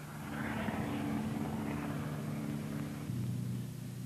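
Steady engine hum of an armoured vehicle under a rushing hiss that fades out about three seconds in, the note of the hum shifting at the same moment. The hiss is a Milan wire-guided anti-tank missile in flight toward its target.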